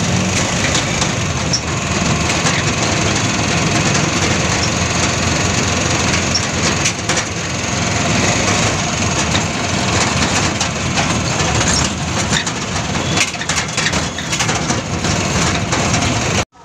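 Loud, steady ride noise inside a moving open-sided passenger vehicle, with constant rattling and clicking from the body.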